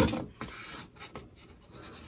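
Small handling noises on a soldering bench: a short scrape right at the start, then faint scratching and a few light clicks.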